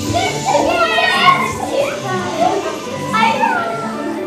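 A group of young children calling out and squealing excitedly during a movement game, with music underneath.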